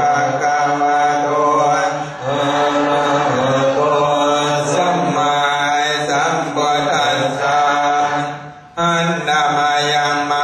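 Buddhist chanting by a group of low male voices, held on a steady recited tone, with a short break near the end before it resumes.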